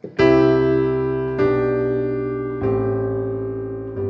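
Piano chords struck one after another about every second and a quarter, each held and fading. It is a walk-down in C: a C chord with the bass stepping down C, B, A toward G.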